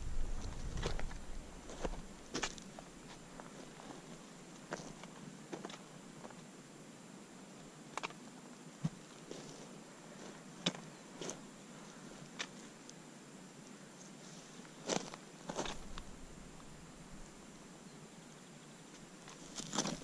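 Footsteps over loose rock, with about a dozen sharp clicks and knocks at irregular intervals as stones and gear strike the rocky ground.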